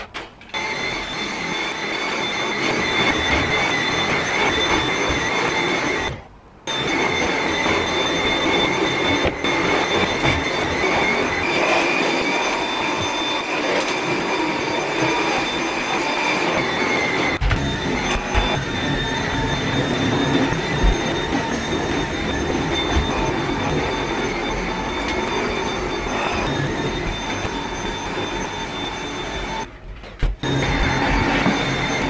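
Cordless stick vacuum cleaner running steadily with a high motor whine, cutting out briefly about six seconds in.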